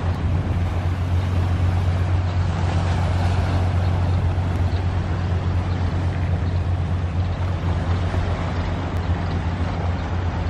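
Wind rumbling steadily on the microphone over the wash of small sea waves breaking on a rocky shore.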